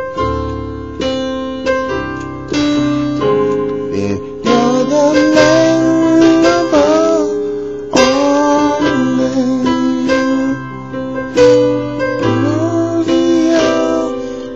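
Slow chords played on a digital keyboard with a piano sound, about a dozen in all, each struck and left to ring, in a worship-song progression.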